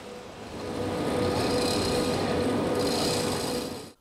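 Water from a hose flooding the surface of an outdoor ice rink, a steady rushing hiss over a constant machine hum; it grows louder about a second in and cuts off just before the end.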